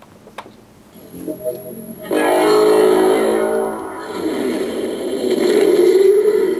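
A small click as the Mind Stone button of a Hasbro Marvel Legends Infinity Gauntlet is pressed, then the gauntlet's electronic sound effect plays from its built-in speaker. It is a loud ringing tone over a high thin whine, coming in about two seconds in and swelling twice.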